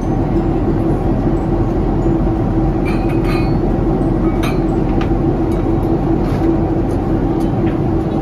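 Steady airliner cabin noise: a loud rumble with a constant hum. Glass bottles and glasses clink a few times, about three to five seconds in.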